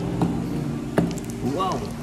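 A plate set down on a table: a faint knock, then a sharp clack about a second in, over steady background music.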